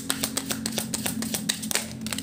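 A deck of cards being shuffled by hand: a rapid run of light card clicks, about eight to ten a second.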